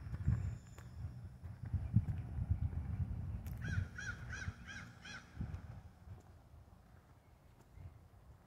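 A crow caws about five times in quick succession, roughly three calls a second, starting just under four seconds in. Underneath is the low, uneven rumble of footsteps.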